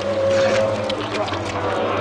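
Horror-film soundtrack of zombies tearing into a man: a run of wet, squelching tearing sounds over low groaning voices and a steady low hum.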